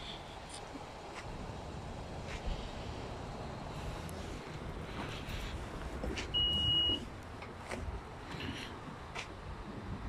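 A single steady high beep of under a second, about six seconds in, from a 2016 Honda Odyssey's power tailgate as it is triggered to open, over a low background rumble.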